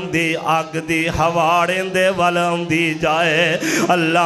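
A man's voice preaching in a melodic, chant-like delivery, with long wavering held notes, heard through a microphone over a steady low hum.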